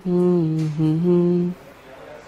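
A man humming a slow tune: two long held notes with a short break between them, stopping about one and a half seconds in.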